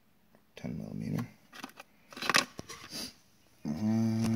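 Cardboard cartridge boxes rustling and scraping as a hand rummages among them, in a short cluster of handling noise about halfway through.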